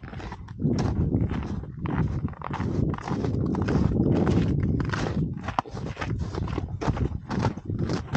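Footsteps crunching on icy snow and rock, several uneven steps a second, with a heavy rumble of wind on the microphone.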